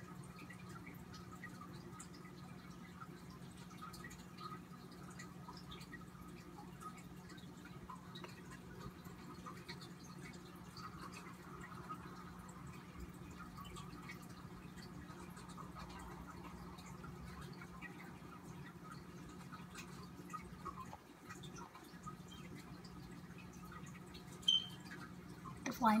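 Quiet room tone: a steady low hum under faint, even background noise, with one brief sharp click about 24 seconds in.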